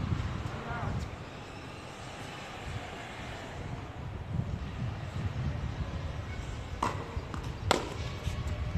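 Tennis ball being hit during a rally: two sharp pops near the end, under a second apart, of the ball coming off a racket and bouncing on the hard court.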